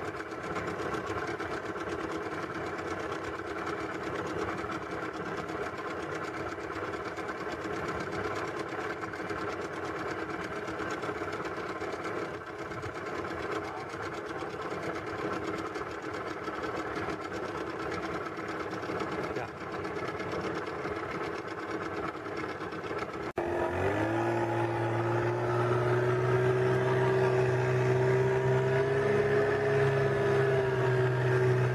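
Boat's outboard motor running steadily. About three-quarters of the way in, after a sudden cut, it comes in louder with a clear engine note that rises a little in pitch as the boat speeds up.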